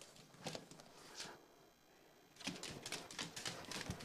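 Faint scuffling and rustling of a small dog tugging at a plush toy held by a person, with a few light knocks and a brief hiss about a second in.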